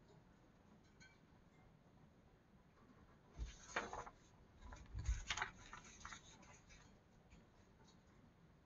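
A paper page of a coloring book being turned by hand: two short rustles with soft thumps, about three and a half and five seconds in, as the page flips over and is pressed flat. The rest is quiet room tone.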